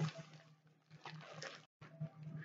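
Faint rustling and crinkling of a plastic bubble mailer being handled, mostly in the second half.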